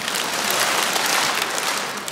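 Large concert-hall audience clapping together in a dense, steady round of applause, more than the two claps they were asked for.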